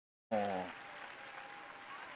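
Arena audience applauding, faint and steady, with a brief snatch of a voice just after the start.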